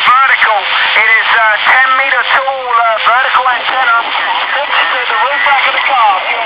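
A distant amateur radio operator's voice received on 40 m single sideband (LSB) through a Kenwood TH-F7 handheld's speaker. The voice is thin and band-limited, with steady band hiss under it.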